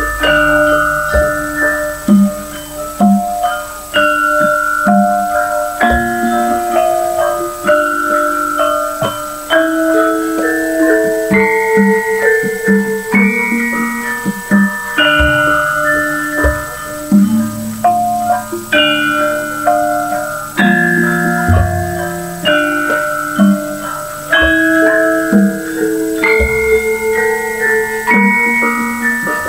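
Javanese gamelan playing an instrumental piece: bronze saron bars and bonang kettle gongs struck by mallet in a running melody, with ringing metallic notes. A few low drum strokes sound under the metal notes.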